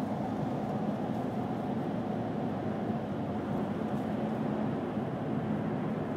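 Steady, low rushing background noise with no clear events or tones.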